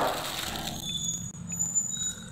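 Clear plastic delivery bags rustling softly as hands handle drink cups inside them, with a few faint clicks. A faint steady high-pitched tone comes in about a third of the way through.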